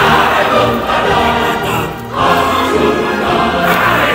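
A group of voices singing together in held notes, with a short drop in level about halfway through.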